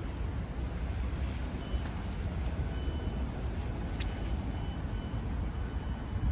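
Low, steady rumble of road traffic and wind on the microphone, with a few faint, short high beeps.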